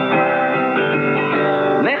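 Czech folk song: a man singing to acoustic guitar, holding a long sung note over the guitar before the next line starts near the end. The sound is narrow and dull, as on an old radio recording.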